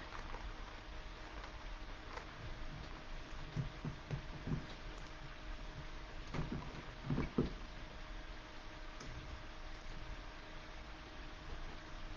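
Faint handling noises over a steady low room hum: a few soft knocks in the first half, then two sharper clicks a little past halfway.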